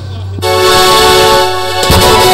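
A loud, steady horn-like tone with many overtones starts about half a second in, dips briefly, and sounds again near the end.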